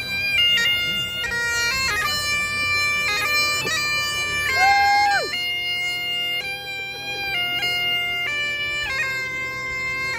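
Highland bagpipes played by a single marching piper: steady drones under a chanter melody stepping from note to note. About halfway, a brief high call rises and falls over the pipes.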